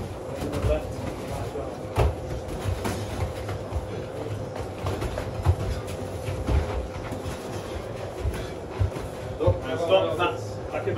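Scattered dull thuds of Muay Thai sparring, gloved punches and kicks landing and bare feet shuffling on foam mats, the sharpest about two and five and a half seconds in, over a faint steady hum.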